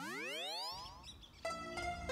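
A cartoon sound effect: a single tone sliding upward in pitch over about a second. Background music starts about a second and a half in.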